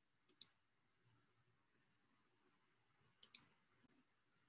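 Two computer mouse clicks in near silence, each a quick pair of ticks, the second about three seconds after the first, as settings are clicked in a web dialog.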